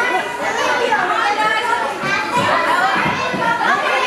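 A crowd of people chattering, many overlapping voices with children's high voices among them, steady throughout with no one speaker standing out.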